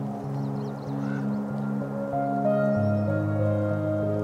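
Slow ambient background music of held, sustained notes; a deeper bass note comes in near the end.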